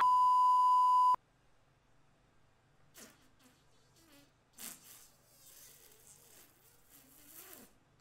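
Steady high-pitched test-card tone, the beep of a 'please stand by' TV test pattern, that cuts off suddenly after about a second. Then only faint small sounds.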